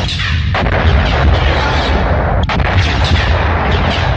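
Dense, continuous cinematic sound effects with a heavy low rumble and booms, laid over a computer-animated skeleton monster sequence.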